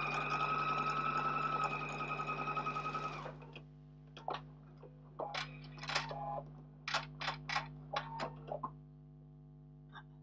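Electric sewing machine stitching at speed with a steady motor whine, slowing to separate stitches and stopping about three seconds in. After that come scattered short clicks and rustles.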